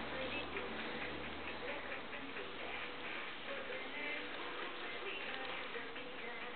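Faint, irregular clicking over steady room noise, with a low hum that stops about halfway through.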